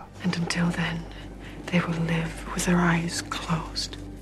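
Hushed, whispered speech spoken close up, in soft broken phrases, over a low steady hum.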